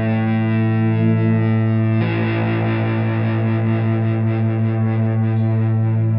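Electric guitar chords ringing out at length. A new chord is struck about two seconds in.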